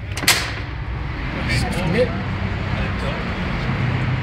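Steady low rumble of street traffic, with one sharp click shortly after the start.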